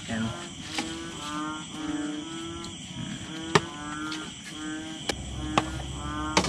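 A metal ladle clinking against an aluminium cooking pot a few times as boiled eel pieces are scooped out, the sharpest clink about three and a half seconds in. Behind it runs a pitched, voice-like sound in short, fairly level notes, over a steady high insect trill.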